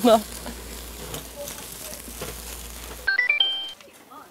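Pork belly sizzling on a flaming grill, a steady hiss with faint voices behind it. About three seconds in it cuts off, and a short sound effect of quick chime notes climbing in pitch follows.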